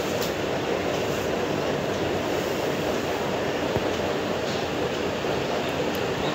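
Steady background rumble and hiss with a faint constant hum, unchanging and with no speech.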